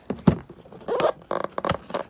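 Clear tape seals on a cardboard toy box being cut and pulled open: a few sharp snaps with a short scraping rip in between.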